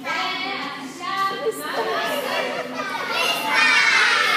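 Several young children's voices talking and calling out at once, getting louder near the end, echoing in a large room.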